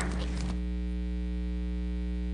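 Steady electrical mains hum with a stack of overtones. A short patch of clicks and rustle dies away about half a second in, leaving only the hum.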